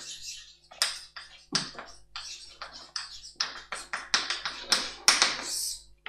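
Chalk writing on a blackboard: an irregular run of sharp taps and short scratches, a few strokes a second, as a word is written.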